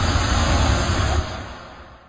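Logo sting sound effect: a loud rushing noise with a deep rumble underneath, which fades away over the second half.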